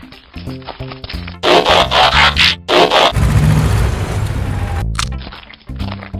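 Background music with a steady beat, broken about a second and a half in by loud hissing whoosh sound effects and then about two seconds of low, roar-like rumbling as two Transformers toy figures combine, before the music returns.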